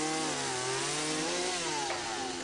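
Chainsaw engine running under load, its pitch rising and falling as it cuts, with a heavy rasp of chain noise.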